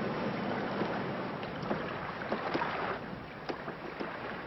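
Open-sea ambience around a small open wooden boat: steady wind and water noise, with a few faint knocks.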